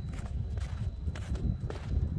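Footsteps crunching on groomed snow, a crisp step about every half second, over a steady low rumble.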